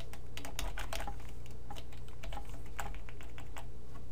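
Typing on a computer keyboard: irregular runs of keystroke clicks, busiest in the first two seconds, over a steady low hum.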